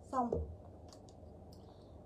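A woman says one short word, then it goes quiet apart from a few faint clicks from clothes hangers with metal hooks being handled.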